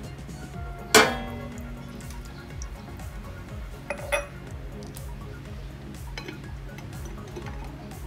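A glass jar clinks sharply against a metal frying pan about a second in, ringing briefly, followed by two lighter clinks about four seconds in, over background music.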